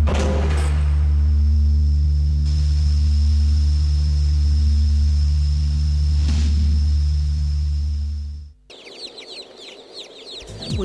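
A loud, steady low drone with a few faint clicks that cuts off suddenly near the end. It is followed by chicks peeping, a flurry of quick high falling chirps.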